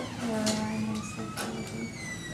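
Two light clicks of clothes hangers being hung up, over a brief low hum of a voice.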